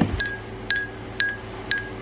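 A metal teaspoon clinking against the inside of a ceramic mug about twice a second as tea is stirred, four clinks in all. A steady high-pitched electronic tone runs underneath and is louder than the clinks.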